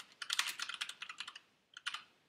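Typing on a computer keyboard: a quick run of key clicks through the first second and a half, then a couple more keystrokes near the end.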